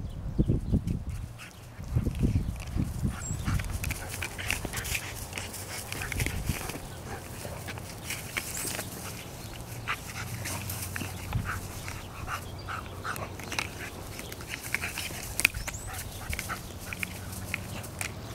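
Yellow Labrador puppy tussling with a ring toy in the grass: scuffling and rustling with small puppy noises throughout.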